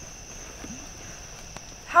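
Crickets chirping, a steady high-pitched chorus, with a man's voice starting right at the end.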